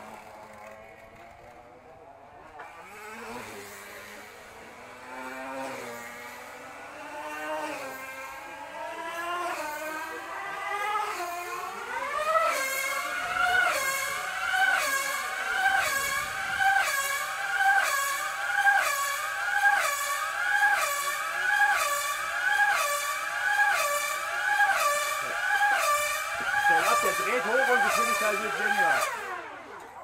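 3.5cc glow-plug two-stroke engine of a tethered speed model car revving up over about twelve seconds as the car gets up to speed on its cable. It then runs at a high-pitched whine that rises and falls about once a second as the car laps the circle past the microphone, and dies away near the end as the car slows.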